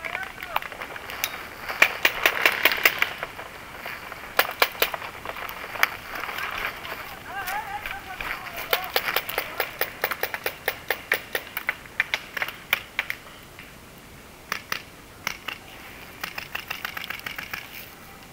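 Paintball markers firing in quick strings of sharp pops, some close and some farther off, with the busiest volleys in the middle and again near the end.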